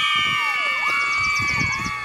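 A young girl's long, high-pitched vocal squeal, held for about two seconds with a brief dip in pitch partway through. A faint rapid pulsing buzz sits high above it.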